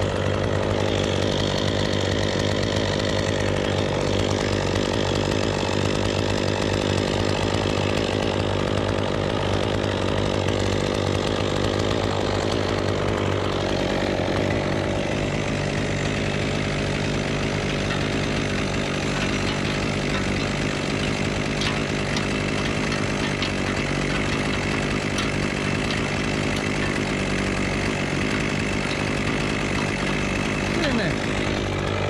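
A small engine running steadily at a constant speed, its tone shifting slightly about halfway through.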